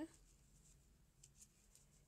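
Near silence: room tone, with a few faint soft ticks about a second in from a crochet hook and cotton yarn being worked.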